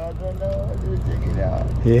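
Sportfishing boat's engine running steadily with a low drone, faint voices over it.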